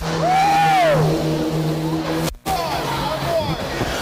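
Race car engines running at a steady pitch as two compact cars go side by side on the last lap, under a long drawn-out voice that rises and falls near the start. The sound cuts out completely for a moment just past halfway.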